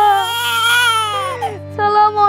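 A long, drawn-out crying wail, sliding slowly down in pitch and fading out about one and a half seconds in, over a low steady music drone; string music starts just after it.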